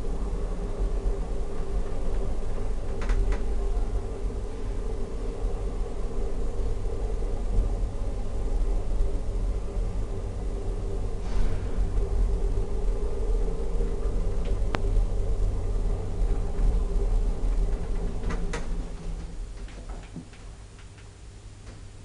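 Hydraulic elevator car travelling, a steady hum and rumble with a few faint clicks, falling quieter near the end as the car comes to a stop.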